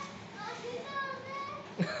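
High-pitched, child-like voices chattering in short calls, with no clear words.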